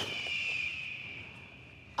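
A single high ringing tone, struck sharply at the start, dipping slightly in pitch and then fading slowly over about two seconds.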